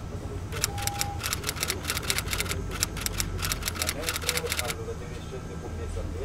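A fast, uneven run of typewriter key clicks from about half a second in until near five seconds, over the steady low rumble of a city bus in motion.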